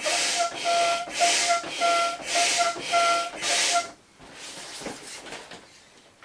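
Hand air pump being worked in about seven quick strokes, each a loud hiss of air with a whistling tone, as it inflates a vinyl inflatable pony through its valve. The pumping stops about four seconds in.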